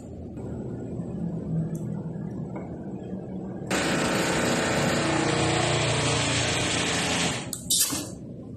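Electric motor and hydraulic pump of a Supermach 3-in-1 busbar machine running with a steady hum; about four seconds in a much louder, hissing whir starts abruptly and holds steady, then cuts off suddenly shortly before the end.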